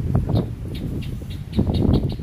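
Wind buffeting the microphone in a low rumble, with a few short knocks and rustles from walking.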